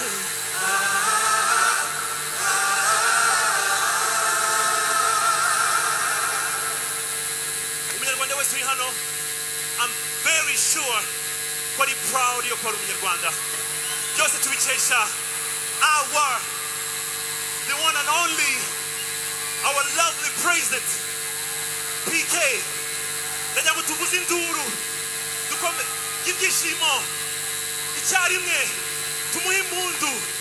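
A choir sings a long held passage through the concert PA for the first several seconds. After that, a man talks into a microphone in short phrases. A steady electrical hum runs underneath throughout.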